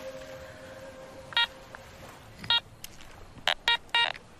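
Metal detector giving short electronic beeps, about five in all, spaced irregularly and closer together near the end: target tones as the search coil is swept over the sand.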